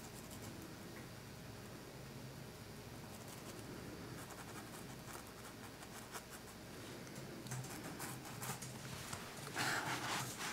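Faint scratching of a paintbrush stroking paint onto a canvas board, with a brief louder rustle near the end.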